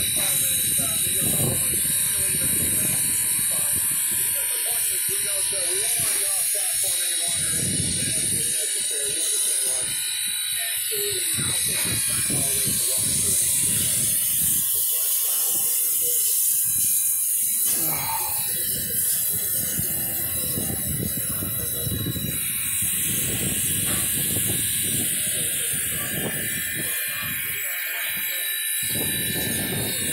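A standing steam locomotive hissing steadily, with people's voices talking over it.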